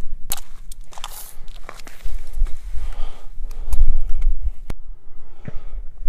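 Handling and shuffling noise as a steel tape measure is pulled out and laid along a ballistic gel block, with several sharp clicks and a low rumble, loudest a little before the middle.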